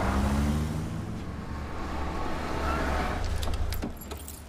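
Cadillac sedan driving slowly through a parking garage: steady engine and tyre noise, with the engine note sliding down in the first second. A few light clicks near the end.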